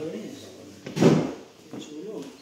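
People talking quietly, with one short, loud knock-like noise about a second in.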